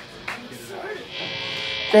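A steady electric buzz from the band's stage amplifiers comes in about halfway through and grows louder, under faint chatter from the crowd. A man starts talking right at the end.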